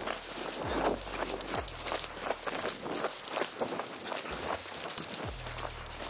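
Footsteps crunching through snow on lake ice, a steady run of steps as someone walks out to a tip-up.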